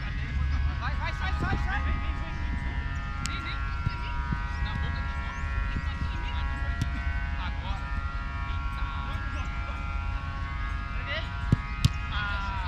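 Open-air ambience of a football pitch: wind rumbling on the microphone and distant players' voices calling across the field. Two sharp knocks come about half a second apart near the end.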